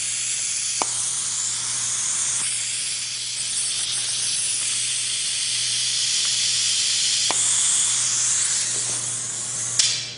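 Compressed-air vacuum ejector (Piab VGS2010) hissing steadily as it runs, exhausting its drive air while its suction cup holds a suture pouch. A few faint clicks come about a second in, near seven seconds and just before the end.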